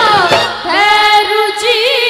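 Women's voices singing a Rajasthani devotional bhajan through stage microphones, holding one long wavering note about a second in, with little drum accompaniment underneath.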